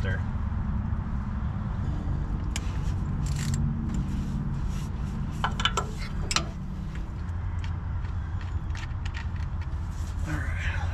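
Scattered metallic clinks and scrapes of a 7 mm socket on a quarter-inch-drive ratchet being worked onto the bolts of the crankshaft position sensor's plastic cover, up beside the exhaust manifold. A steady low hum runs underneath.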